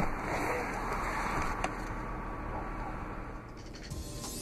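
Handling noise at a car's rear seat: a steady rustle with a sharp click at the start and another about one and a half seconds in, as the rear seatback's fold-down release is worked.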